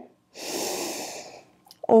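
A woman's deep, audible in-breath, about a second long, starting shortly after the start; her voice comes back in right at the end.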